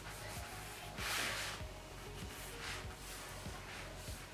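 Hands rubbing and pressing low-tack masking tape down along the edges of watercolour paper, a soft brushing hiss about a second in, over faint background music.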